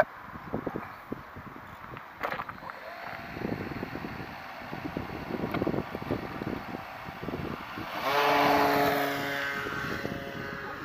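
Electric motor and propeller of a Wot4 Foam-E RC model plane opening up for takeoff, a pitched whine that comes in loud about eight seconds in and then falls slightly in pitch. Before that, wind noise and light knocks.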